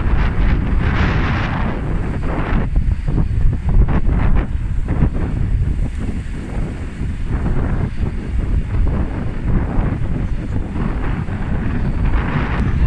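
Wind buffeting the microphone: a low rumbling rush that rises and falls in gusts, with a brighter hiss over it for the first two or three seconds.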